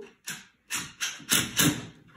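Cordless battery drill driving a screw through a wooden batten into a plugged block wall, run in about five short trigger bursts as the screw is snugged up firm.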